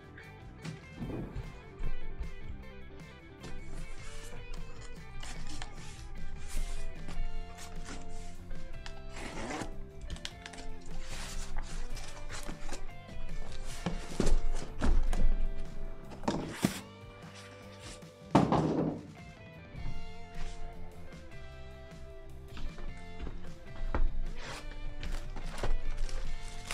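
Background music over several thunks and knocks of cardboard card boxes being lifted, set down and handled, with plastic wrap crinkling near the end.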